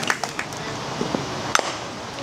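A few sharp knocks and clicks as a baseball is hit and played in the field, the loudest about one and a half seconds in.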